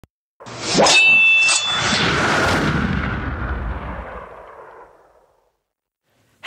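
Intro sound effect: two sharp hits with a brief ringing tone, then a swelling rush that fades away over about three seconds.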